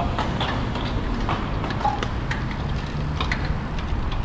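A group of road bikes rolling off slowly: a steady low rumble of wind and road noise on the microphone, with scattered sharp clicks from the bicycles as the riders start pedalling.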